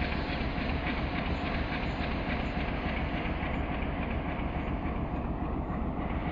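Train engine running: a steady low rumble with a faint steady hum over it.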